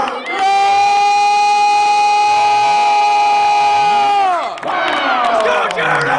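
A ring announcer's single long shout, one held vowel drawn out for about four seconds, that drops in pitch at the end as he calls out the fighter's name. The crowd then cheers and whoops.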